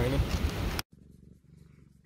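A domestic calico cat purring faintly and steadily while being petted. It comes in after a sudden cut under a second in, which ends a spell of noisy outdoor background and a spoken word.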